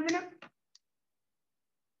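A man's voice trailing off at the end of a word, then a single faint click about three-quarters of a second in, followed by silence.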